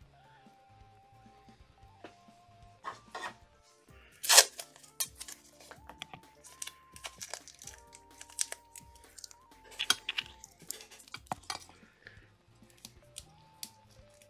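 Quiet background music with a simple melody stepping from note to note, over scattered clicks and knocks of small objects being handled, the loudest a sharp knock about four seconds in.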